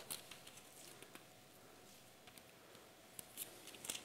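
Faint scattered rustles and soft ticks of thin Bible pages being turned, with a small cluster near the end.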